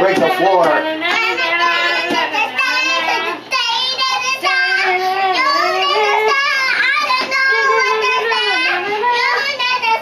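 A toddler singing wordlessly into a toy voice-amplifier microphone, in long wavering notes with only a brief break about a third of the way through.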